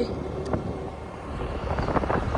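Motorcycle riding along a road at speed: a steady engine rumble and rushing air, heard from the pillion seat.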